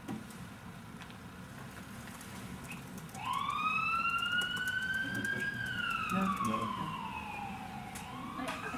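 Emergency vehicle siren wailing: about three seconds in, a tone comes in and rises for about two seconds, then falls slowly.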